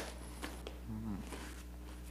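Quiet room tone with a steady low hum, faint clicks and paper handling from the mugbook pages, and a brief low sound that bends up and down in pitch about a second in.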